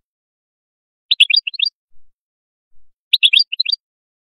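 European goldfinch (hassoun) singing: two short bursts of quick, high twittering notes about two seconds apart, with a couple of faint soft notes between them.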